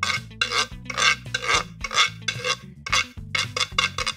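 Wooden fish-shaped guiro scraped with a stick across its ridges: a quick, even run of short scrapes, about three strokes a second.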